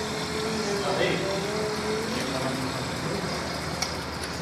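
Cutaway motorcycle engine model being turned over mechanically, a steady whirr of its exposed gears and shafts, with faint voices behind it.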